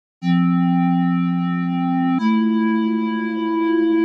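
Opening of a computer-made electronic music track: steady synthesizer tones held as a chord, which shifts to a new chord about two seconds in.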